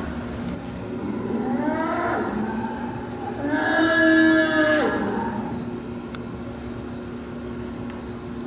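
Cattle mooing twice: a shorter call that rises and falls, then a louder, longer moo held at one pitch and dropping off at its end. A steady low hum runs underneath.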